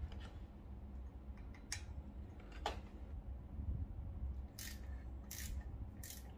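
Handling of a plastic torque-wrench kit: a couple of light sharp clicks as bits are picked from the tray, then two short scraping rustles near the end, over a steady low hum.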